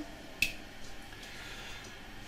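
A single short, sharp click about half a second in, then faint room tone.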